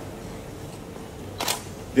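Pause in a man's talk: a faint steady room hum, with one brief sharp noise about one and a half seconds in, just before the voice comes back.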